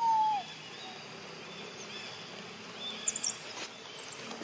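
Baby macaque screaming in shrill, wavering squeals through the last second. A short falling whistle-like call at the very start.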